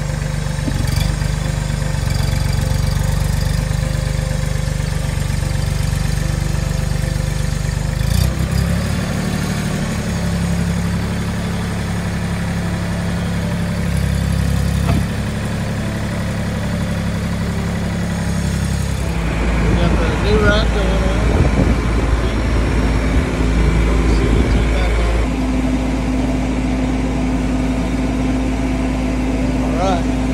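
Mahindra compact tractor's diesel engine running steadily while its front loader lifts a load on pallet forks, the engine note shifting a few times; a steady higher hum joins in the later part.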